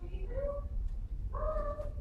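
Two short mewing calls: the first rises in pitch, and the second, about a second later, is held for about half a second.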